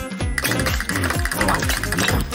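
A rapid mechanical grinding chatter starts about half a second in: a sound effect for toy teeth gnawing through a steel padlock shackle. Background music plays underneath.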